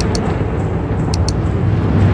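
Sustained deep cinematic rumble from a title sequence, carrying on from a boom. Over it, two quick double clicks of a computer mouse, one at the start and one about a second later.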